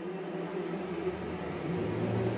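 A steady rumbling, hissing noise with a low hum underneath, an added sound effect that grows slightly louder toward the end.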